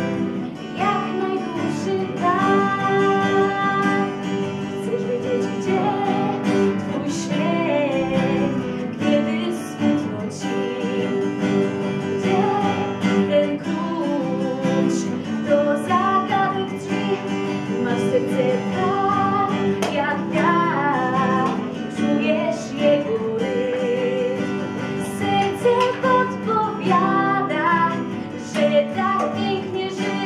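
A woman singing with her own acoustic guitar accompaniment, sung phrases over steadily played chords.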